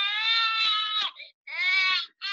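RealCare Shaken Baby infant simulator playing its recorded infant cry through its speaker. One wail breaks off about a second in, and a second wail starts near the end. This is the crying the simulator begins once it is switched on.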